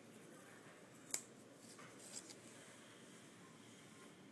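A white wristband being slid off a wrist: faint handling rustle, with one sharp click about a second in and a few lighter clicks and crinkles around two seconds in.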